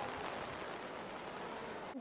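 Heavy rain pouring down, a steady even hiss, picked up by a clip-on wireless mic with no windshield and noise reduction off.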